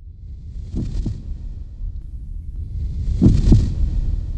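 Heartbeat sound effect over a low rumble that swells louder: paired lub-dub thumps, about a second in and again near three seconds, the two beats of each pair about a quarter second apart.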